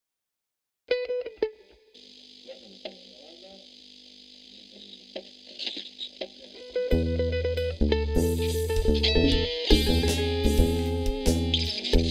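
Instrumental math rock from a band with electric guitars, bass and drums. A few plucked electric guitar notes come first, then a quiet stretch of guitar tones over amplifier hiss. At about seven seconds the full band comes in loud, with distorted guitars, heavy bass and drums with cymbal crashes.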